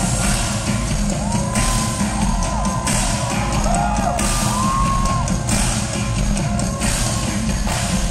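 Live rock band playing loudly, heard from among the audience: drum kit hits throughout, with sliding pitched notes around the middle.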